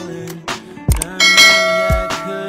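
Background music with a beat, joined about a second in by a bright bell chime that rings on for most of a second: the notification-bell sound effect of a subscribe-button animation.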